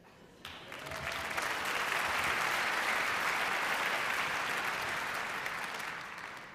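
Audience applauding. It starts about half a second in, swells, then tapers off near the end.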